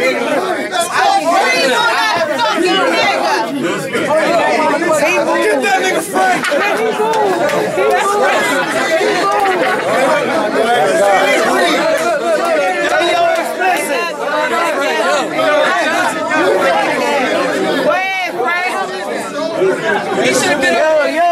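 Crowd of many voices talking and shouting over one another at once, a dense, unbroken babble of chatter.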